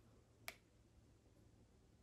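Near silence: room tone, with one faint sharp click about half a second in.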